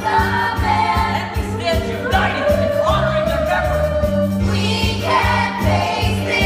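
A stage-musical ensemble singing in chorus over backing music with a steady bass line and beat, one long held note about halfway through.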